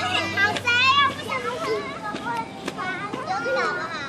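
Several children's high-pitched voices calling out at play, overlapping, loudest about a second in.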